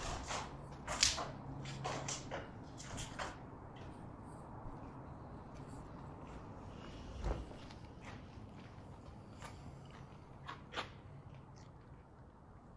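Footsteps on a gritty, debris-strewn floor: a few sharp scuffs and clicks in the first three seconds, then quieter steps, with one dull thump about seven seconds in and a couple more clicks near the end.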